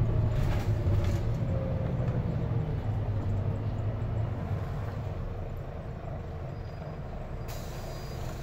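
Inside a moving bus: the engine and running noise make a steady low rumble that slowly eases off, with a faint whine falling in pitch over the first couple of seconds. A hiss comes in near the end.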